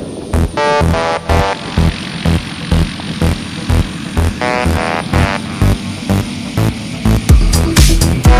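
Electronic dance music with a steady thumping beat and short synth phrases.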